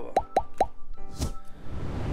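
Three quick cartoon-style pop sound effects, each dropping in pitch, in the first half-second or so, then one sharp snip about a second in, over background music.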